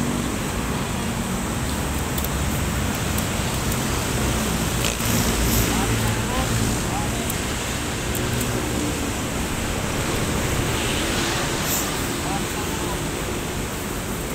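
Steady rushing outdoor background noise, with a few faint crackles.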